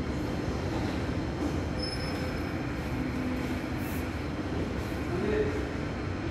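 Steady low rumble and hum of an indoor shopping mall's background noise, with faint voices coming in near the end.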